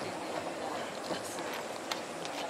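Steady noise of the river and open-air surroundings, with scattered light clicks and knocks from the boat.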